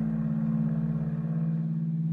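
Low sustained notes from a trio of bass saxophone, bass trombone and electric bass guitar: two deep pitches held steadily together as a drone.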